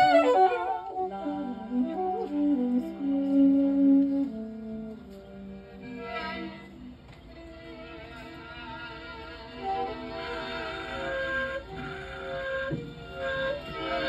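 Live violin and saxophone playing slow, long held notes. The music drops quieter around the middle and builds again in the last few seconds.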